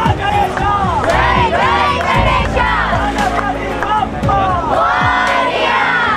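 A crowd of many voices shouting and cheering together, calls rising and falling over one another.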